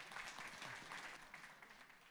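Audience applauding, a dense patter of many hands clapping that tails off in the second half.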